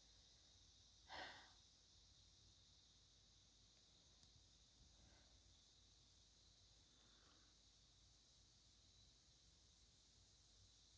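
Near silence: room tone with a faint steady hiss, broken about a second in by one short exhale, like a sigh.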